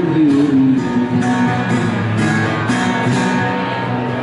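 Acoustic guitar strummed in a steady rhythm, about two strums a second, during an instrumental break between sung lines.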